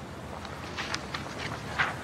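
Quiet room tone: a faint steady hiss with a few soft, faint clicks or rustles.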